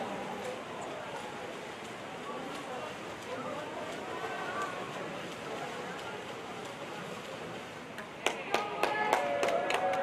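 Echoing indoor pool-hall noise with distant voices and the splashing of two backstroke swimmers racing into the wall. About eight seconds in, several sharp smacks ring out as shouting picks up.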